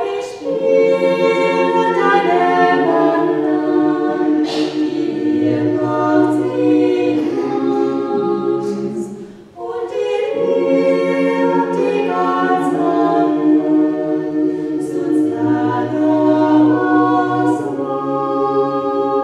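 Mixed choir of women's and men's voices singing unaccompanied in sustained chords. It comes in at the start, breaks off briefly about nine and a half seconds in, and comes back in with the next phrase.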